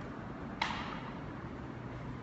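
Steady mechanical room hum with a faint low drone. A single sharp click or knock cuts through it about half a second in.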